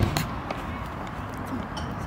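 Faint voices over steady outdoor background noise, with a sharp knock right at the start and a lighter one about half a second in.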